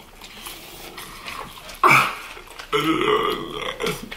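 A person burping after a taste of Sprite: a short, sudden burp about two seconds in, then a longer drawn-out one near the end.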